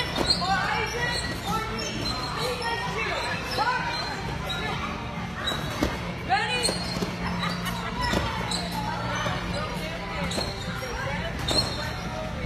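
Indistinct shouting and chatter of children echoing in a large hall, with occasional sharp thumps of bouncing on trampolines, over a steady low hum.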